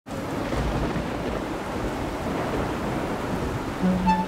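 Heavy rain falling, with a low rumble of thunder about half a second in; a singing voice comes in right at the end.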